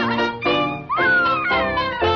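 Early-1930s cartoon soundtrack music playing, with a high sliding cry that falls in pitch about a second in.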